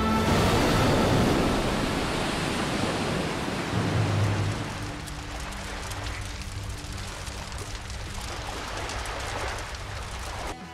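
A rushing noise, loudest in the first few seconds and then fading to a lower level, with a low steady hum beneath it and faint crackles.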